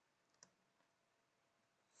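Near silence, broken once by a faint, brief click about half a second in.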